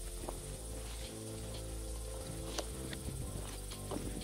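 Footsteps of people walking on a dirt trail, with a few sharper steps about two and a half and four seconds in, under background music of sustained low notes and a steady high insect buzz.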